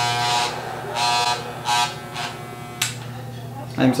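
Electric hair clippers with a number three guard buzzing steadily, with several short, louder bursts in the first couple of seconds as the blades are tried on the hair.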